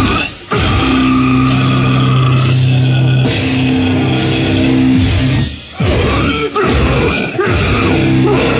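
Slam death metal band playing live, with heavy guitar, bass and drums. Low chords are held for several seconds, broken by short stops about half a second in and again around six to seven seconds in.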